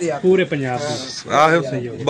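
A young water buffalo heifer calling, mixed in with a man's talk.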